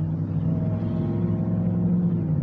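Steady low drone of a motor vehicle's engine running, with a faint higher tone that comes in and fades out in the middle.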